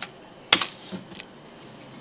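Keystrokes on a computer keyboard: one sharp key press about half a second in, then a couple of fainter taps.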